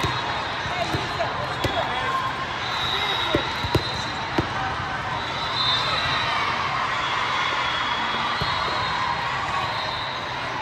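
A volleyball bouncing on the court floor, a handful of sharp slaps in the first four or five seconds, over the steady chatter of voices in a large, crowded sports hall.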